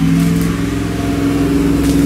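A steady low drone made of a few held tones, which cuts off at the end.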